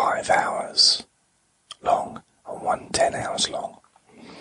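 A man whispering in two short phrases separated by a brief pause.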